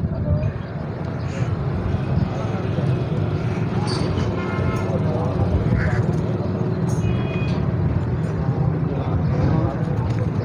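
Steady low rumble of a vehicle engine under indistinct voices, with a short pitched sound about halfway through.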